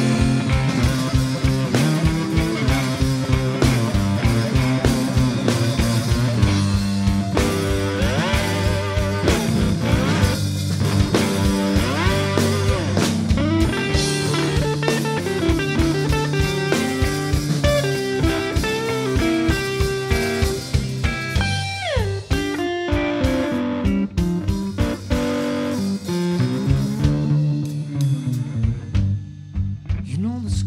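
Live blues band playing an instrumental passage: two electric guitars over a drum kit, with a guitar line sliding down in pitch about two-thirds of the way through. The drums drop out near the end.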